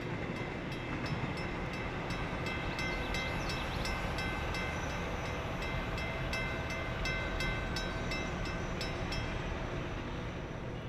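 Double-deck commuter train running past at a distance: a steady rumble with a repeating click of wheels over rail joints and a few steady high tones above it.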